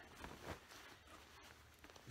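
Near silence: only faint rustling of a garment being handled, with one soft bump about half a second in.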